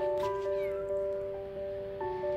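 Soft background music of long held notes, with a faint short meow from a stray cat about half a second in.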